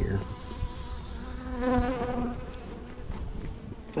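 Honeybees buzzing around an open hive, a steady hum. One bee flies close by in the middle, louder for about half a second with a wavering pitch.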